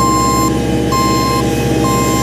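Double-drum asphalt road roller with its diesel engine running steadily, and a reversing alarm beeping three times, each beep about half a second long and about a second apart, as the machine backs up.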